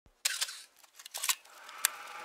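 A handful of sharp clicks and crackles, about five of them spaced irregularly over two seconds with a faint hiss between, forming the sound-design intro of an electronic track.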